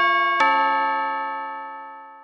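Two-note bell-like chime sound effect: a ringing chime already sounding as a second strike comes in about half a second in, both ringing on and fading away.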